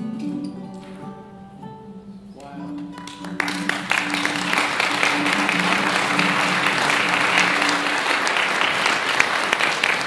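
Baritone ukulele and archtop guitar play the last notes of a song and strike a final chord about two and a half seconds in, which rings on for several seconds. Audience applause breaks out about a second after the chord and keeps going, the loudest sound.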